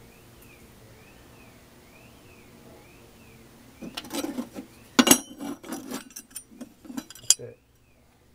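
Steel knife blanks made from old files clinking and clattering against one another as they are picked up and handled. This starts after a few quiet seconds, with two sharper knocks about five and seven seconds in.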